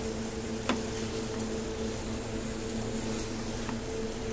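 A steady motor hum with a few faint pitched tones runs throughout. Over it are light knocks of a spatula stirring jackfruit pieces and masala in a nonstick kadhai: a clear knock a little under a second in, and fainter ones later.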